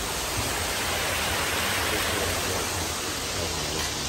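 A steady rushing noise, swelling slightly in the middle.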